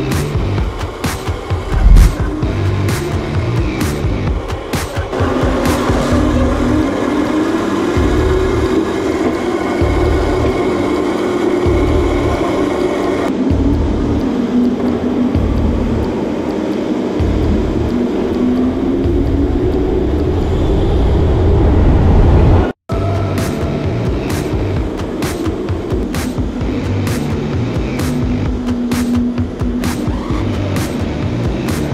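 Electronic music track with a steady beat and heavy bass. It builds toward a peak, cuts out abruptly for an instant about 23 seconds in, then carries on.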